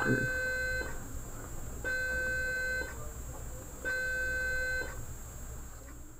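An electronic beep repeating at a steady pace, each tone a steady pitch lasting about a second, about two seconds apart: one ends just under a second in, then two more follow.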